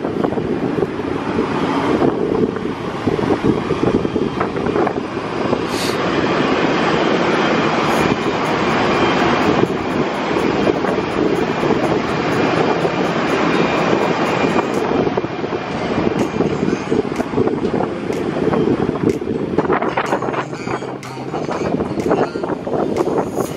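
Wind buffeting the microphone on the open top deck of a ship under way at sea: a steady, loud, low rushing.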